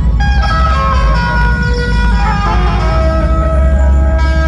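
Dhumal band playing: large drums beating a fast, dense rhythm under a loud lead melody of held notes with sliding, falling pitches.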